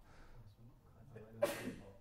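Quiet room tone with one short, breathy vocal burst from a person about one and a half seconds in.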